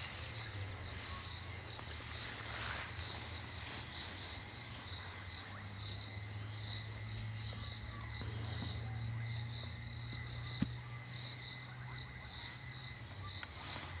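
Cricket chirping in a steady train of evenly spaced, high-pitched chirps, over a low steady hum. A single sharp click sounds about ten and a half seconds in.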